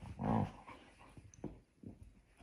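A puppy gives one short vocal sound about a quarter second in while nosing and digging into bedding after a chew bone, followed by faint rustling and scratching of the sheets.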